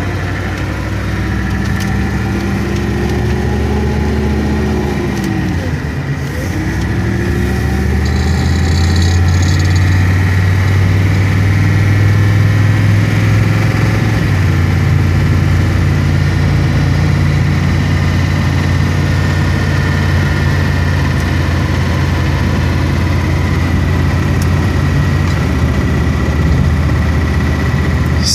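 Ford 6.9-litre V8 diesel engine running under load while the truck is driven, heard from inside the cab. The engine note dips briefly and climbs again about five seconds in, then runs steadily a little louder, with a faint steady high whine over it.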